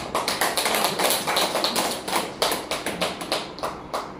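A small audience clapping: a few seconds of dense, irregular hand claps that die away near the end.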